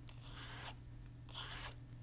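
Old toothbrush bristles loaded with paint drawn across watercolour paper to stroke texture lines onto the petals: two faint strokes, the first about half a second long, the second shorter about a second and a half in.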